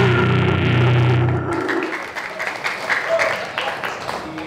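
The last chord of a live metal song, on distorted electric guitar and bass, is held and rings out, then cuts off about one and a half seconds in. Audience shouts, cheers and chatter follow.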